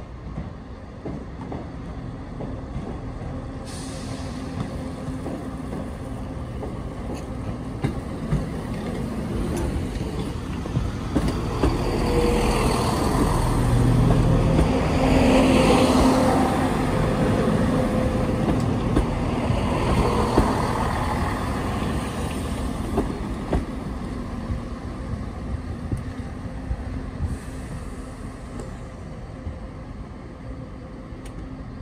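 ScotRail Class 170 Turbostar diesel multiple unit running past along the platform, its underfloor diesel engines humming steadily. The sound builds to its loudest about halfway through as the train goes by, then fades as it moves away.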